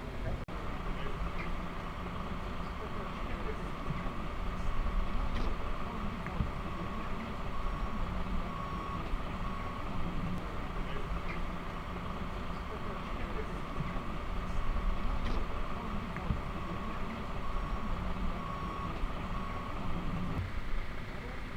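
Steady low rumble of an idling heavy vehicle engine, with faint short beeps coming and going and distant voices.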